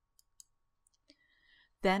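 Near silence with a few faint, short clicks, then a woman starts speaking near the end.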